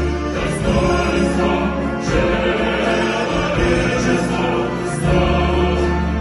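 Large mixed choir of men's and women's voices singing a slow, anthem-like song with grand piano accompaniment, the low notes held and changing every two or three seconds.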